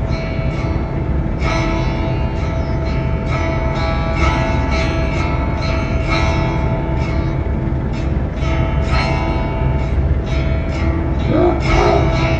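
Music with plucked-string and bell-like notes over a steady low rumble.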